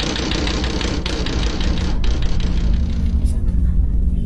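Rapid, continuous banging and rattling on a window, heard through a phone recording; it stops about three seconds in, leaving a low rumble.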